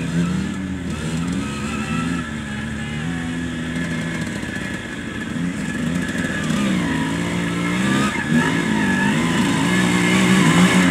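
Vintage enduro motorcycle engine running at low revs through deep mud, its pitch rising and falling as the throttle is opened and eased. It grows louder near the end as the bike comes closer.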